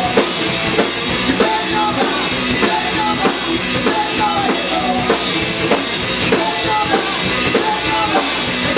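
Rock band playing live: drum kit keeping a steady beat under electric guitar and bass guitar, at a constant loud level.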